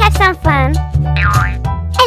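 A high-pitched voice speaking over children's background music with a steady low bass line.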